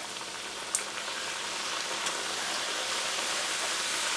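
Namak pare dough pieces just dropped into oil at medium heat, deep-frying: a steady sizzling hiss of bubbling oil that grows slowly louder, with a faint pop or two.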